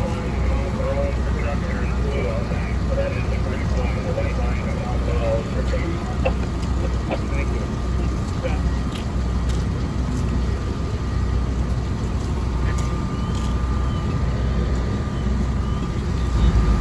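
A steady, low engine drone from fire-ground equipment running throughout, with faint distant voices mixed in, mostly in the first half.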